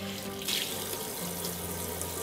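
Kitchen faucet running into a sink, the stream splashing over hands being washed; the splashing grows brighter about half a second in.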